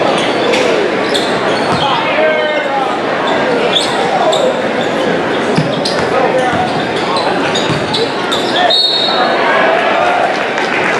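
Basketball game sound in a reverberant gym: a ball bouncing on the hardwood court and shoes squeaking, over the crowd's steady chatter and shouts.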